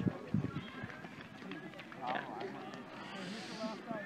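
Background voices of people talking and calling out at a distance, several at once, with no single close speaker.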